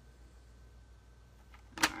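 Quiet room tone, then a single sharp click about two seconds in.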